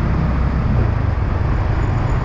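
Motorcycle engine running steadily while riding in city traffic, heard from the rider's seat, with the even noise of the road and surrounding traffic.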